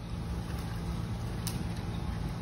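Steady low hum of a stopped subway train idling, with a single sharp click about one and a half seconds in.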